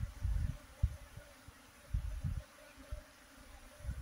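A clustered honeybee swarm buzzing as a faint steady hum. Irregular low rumbling bursts come and go over it, loudest at the start and about two seconds in.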